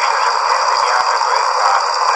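Loud, steady radio static: a dense hiss with faint, steady high whistling tones running under it, the broadcast voice dropped out.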